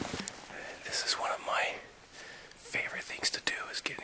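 A man whispering close to the microphone in short phrases, with small sharp clicks between the words.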